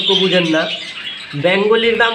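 A man's voice talking, with caged small birds calling in the background.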